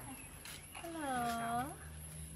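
A woman's voice: one drawn-out word, its pitch dipping and then rising at the end, spoken coaxingly to a cat.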